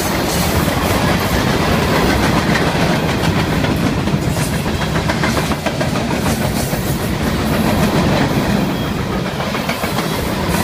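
Freight cars of a manifest train rolling past close by: a steady, loud rumble of steel wheels on the rails, with repeated clicks as the wheels pass over the rail joints.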